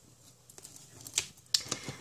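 Plastic pens and small stationery handled on a table, giving a few light clicks and taps, mostly in the second half.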